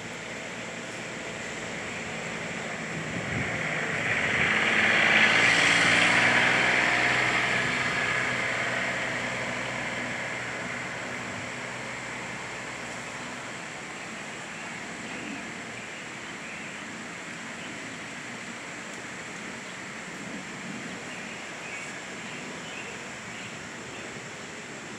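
A passing engine, swelling to a peak about five seconds in and slowly fading away over the next several seconds, over a steady outdoor hiss.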